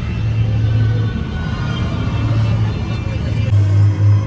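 Scare-zone soundtrack over loudspeakers: a loud, low rumbling drone that turns into a pulsing throb near the end, with crowd voices underneath.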